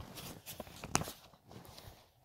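Quiet room with a few faint short clicks or knocks, the sharpest about a second in.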